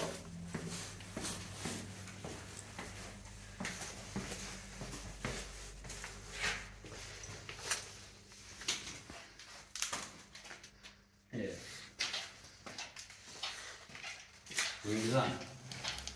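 Footsteps on a concrete floor, about one a second, with indistinct low voices near the end.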